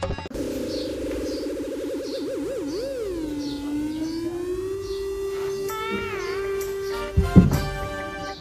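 Comedy background music: a single long, wavering electronic tone whose wobble slows and settles into a steady held note, with a sharp hit about seven seconds in.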